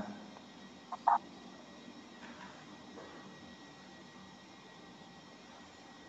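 A pause in speech: faint steady room tone, broken once about a second in by a short, sharp sound.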